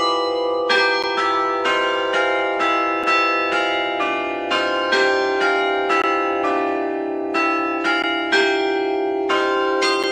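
Church bells hung in an open tower frame ringing, struck one after another about three times a second in a changing run of notes. Each note rings on under the next.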